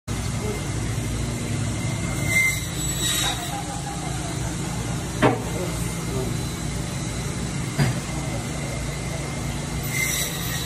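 Steady low rumble of background machinery with faint voices, broken by two sharp knocks, one about five seconds in and one near eight seconds.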